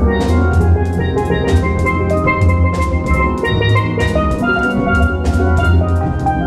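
Steel drum band playing: many steel pans ring out melody and chords over deep bass notes, with sharp percussion strikes keeping a steady beat.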